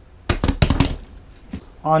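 A hand slapping a padded seat cushion under a new upholstery cover to smooth the wrinkles out: a quick run of four or five slaps, then one more about a second and a half in.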